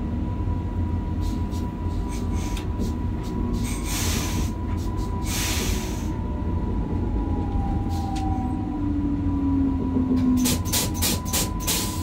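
Train running on rails, heard from the driver's cab: a continuous low rumble with a steady high thin tone. Clusters of sharp clicks come about four to six seconds in and again near the end, and a tone slides slightly lower around nine to ten seconds in.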